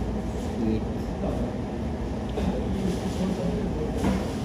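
Fast-food counter ambience: a steady low rumble with indistinct voices in the background.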